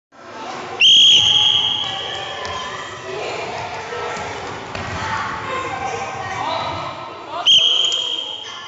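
A whistle blown twice in a sports hall: a loud steady high note lasting about a second near the start, and again near the end. Between the blasts, children's voices and soft thuds on the hall floor.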